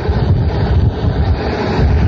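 Wind buffeting the microphone: a loud, uneven low rumble with a hiss over it.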